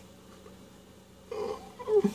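Quiet room tone, then about a second and a half in a man starts a short, breathy laugh.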